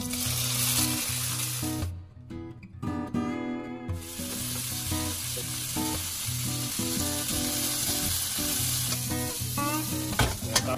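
Chunks of sausage and diced broccoli stems sizzling as they fry in hot oil in a nonstick pan. The sizzle breaks off for about two seconds a couple of seconds in, then resumes.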